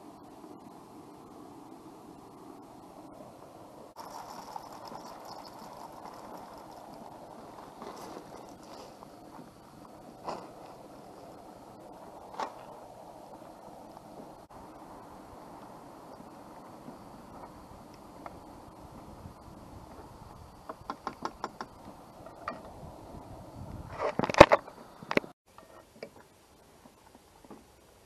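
Single-burner propane camp stove running steadily under a steel pot, with a few isolated clicks and a quick run of ticks. Near the end a utensil scrapes and knocks against the pot, the loudest sounds here.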